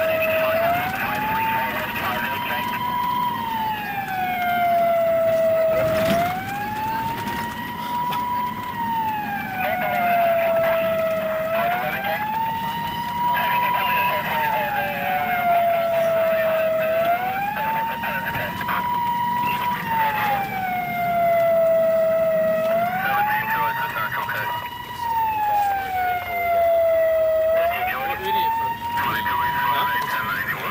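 Police siren in a slow wail, its pitch rising and falling about every five and a half seconds, heard from inside a moving vehicle. A single knock sounds about six seconds in.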